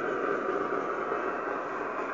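Kenwood R-2000 shortwave receiver tuned to the 40 m band, playing steady band noise and static with a few faint steady tones mixed in.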